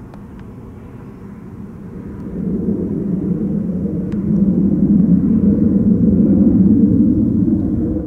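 Two military jets flying overhead, their distant engine rumble swelling from about two seconds in and loudest near the end.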